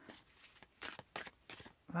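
Tarot cards being shuffled and pulled from the deck by hand: a quiet, quick run of short papery card snaps in the second half.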